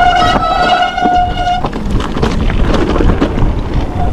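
Mountain bike disc brake squealing: one steady high tone for about a second and a half that cuts off suddenly, over the rumble of tyres on the trail and wind on the microphone.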